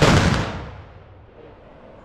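A rifle volley fired as an honour salute (Ehrensalve) by a company of Tyrolean Schützen: one loud crack, its echo dying away over about a second.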